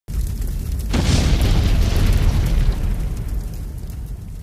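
Cinematic logo-intro sound effect: a deep rumbling boom, with a sudden burst of hiss about a second in, then a long rumble that slowly fades.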